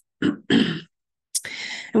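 A woman clearing her throat in two short bursts.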